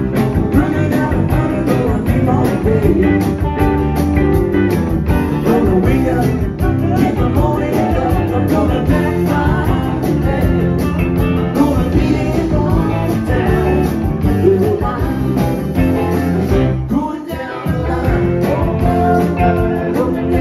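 A rock band playing live, electric guitars over drums with a steady beat; the low end drops out for a moment about three seconds before the end.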